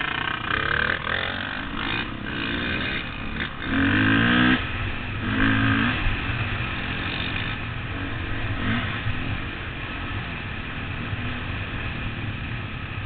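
Dirt bike engine accelerating away, picked up by a helmet-mounted camera; the revs rise in two climbs about four and five and a half seconds in, the first the loudest, then the engine runs steadier.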